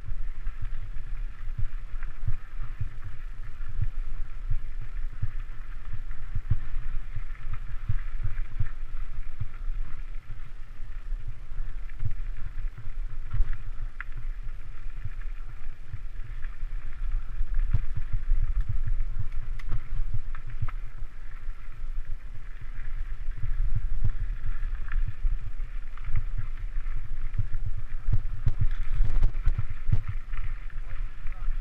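Mountain bike riding over a dirt single track, heard from a camera mounted on the bike or rider: a steady low rumble with frequent thumps and rattles as the bike jolts over bumps and rocks.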